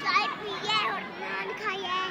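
High-pitched children's voices talking and calling out in quick short phrases while they play.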